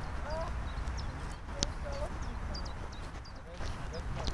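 Small birds chirping, short high chirps repeated many times over a steady low rumble on the microphone, with one sharp click about a second and a half in.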